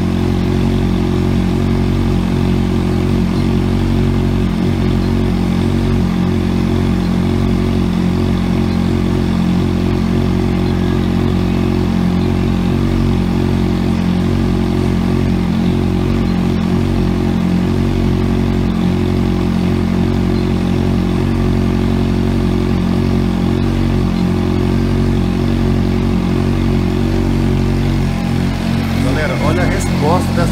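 Honda Hornet's inline-four engine idling steadily at a constant speed.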